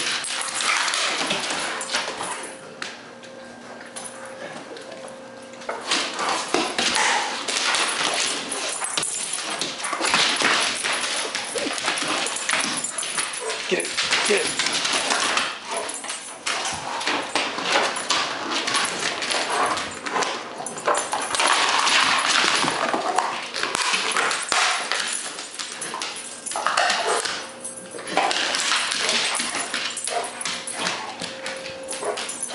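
A Rottweiler tearing at and chewing up a plastic frisbee, with irregular bursts of scuffling and chewing noise and dog vocalisations. There is a quieter spell a few seconds in.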